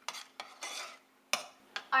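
A metal spoon stirring raspberry jam in a stainless steel pot, clicking and scraping against the pot several times, with one louder knock a little past the middle.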